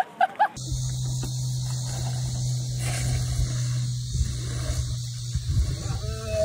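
Golf cart engine running with a steady low hum and rumbling underneath, starting about half a second in after a short laugh.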